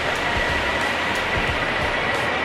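Steady rushing hiss of the Magic Fountain of Montjuïc's water jets, with faint music underneath.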